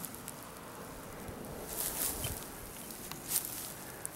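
Faint outdoor background with a few soft swishes, about two seconds in and again a little after three seconds, from footsteps on grass as the person holding the camera walks across the lawn.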